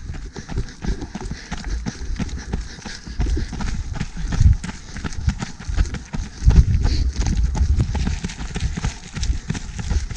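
Trail-running shoes striking a loose gravel and rock track at a quick, steady running rhythm on a downhill, each step a crunching thud.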